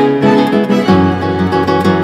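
Recorded chamber music for classical guitar and string quartet: plucked guitar notes over sustained bowed strings, with a low held note coming in about a second in.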